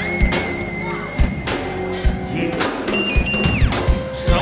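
Live band playing an instrumental groove: drum kit, electric guitar and bass, over a high sustained lead tone that glides in pitch, holding long and then stepping higher before sliding down near the end.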